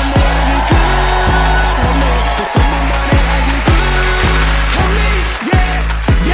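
Instrumental hip-hop beat with deep 808 bass hits that slide downward, about two a second. A hiss from stage CO2 jet guns blasting sounds over the first second.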